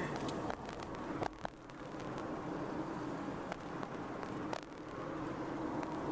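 Steady road and engine noise of a car driving in city traffic, heard from inside the cabin, with a couple of light clicks.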